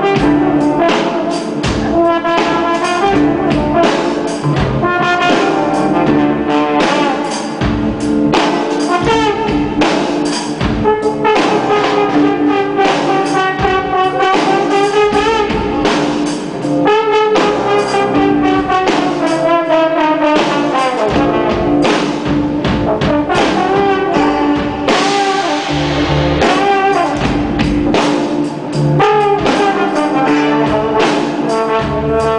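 A large live band and orchestra playing a jam, with brass, strings and drums, loud and continuous.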